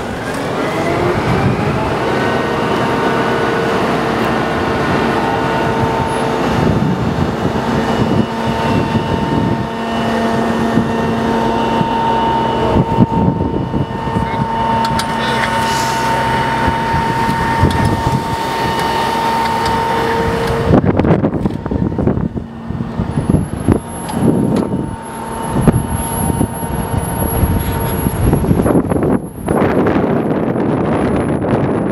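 Fire-truck aerial lift raising its basket: a steady, pitched whine from the truck's engine-driven hydraulics, rising in pitch over the first couple of seconds. About two-thirds of the way through it stops, leaving wind gusting against the microphone.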